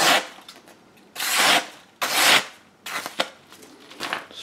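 A machete blade slicing through a hand-held sheet of paper in a sharpness cut test: three short rasping cuts about a second apart.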